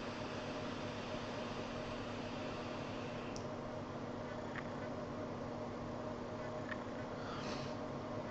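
Faint airy hiss of a long draw on an e-cigarette with a Zenith dual-microcoil atomizer, lasting about three seconds and ending in a faint click, over a steady low room hum.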